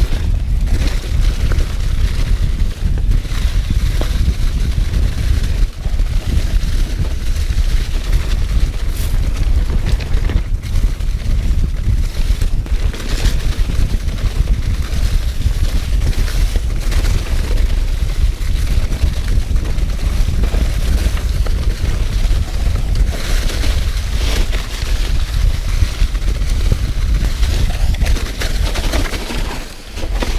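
Mountain bike riding fast down a dirt singletrack, heard from a camera on the rider: heavy wind rumble on the microphone over the steady noise of tyres rolling through leaf-covered dirt, with frequent knocks and rattles as the bike jolts over bumps.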